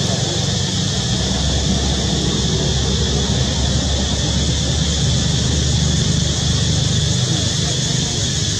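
Steady outdoor background noise: a low rumble under a constant high hiss, with no distinct events.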